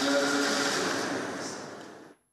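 A broadcast transition sound effect: a noisy whoosh with a faint steady tone inside it, loudest about the first second, then fading out over the rest.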